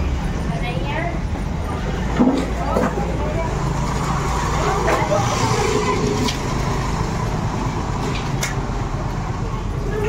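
Busy street background: a steady low rumble of traffic with a murmur of voices and a few brief, indistinct bits of speech.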